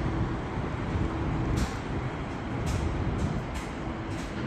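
Steady low rumble of distant city traffic heard from high above the streets, with a few brief faint hisses.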